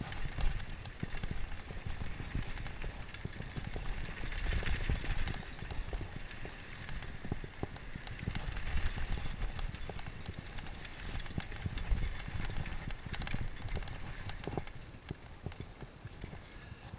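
Downhill mountain bike running fast over a rough dirt and rock trail: the tyres rumble on the ground while the frame, fork and chain rattle with a quick, irregular run of knocks over roots and stones. The knocking eases near the end.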